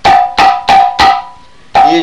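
A tuned hand drum of the kind used in Kerala panchavadyam struck four times in quick succession, each stroke ringing on a clear pitch before dying away, demonstrating the drum's tone.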